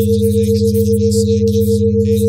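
Synthesized subliminal-track tones: a steady mid-pitched tone pulsing several times a second over two steady low hums, with a faint, flickering high-pitched hiss above.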